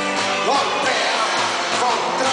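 Live band playing a pop song, with a singer's voice over keyboards and drums, heard loud and even from within the audience.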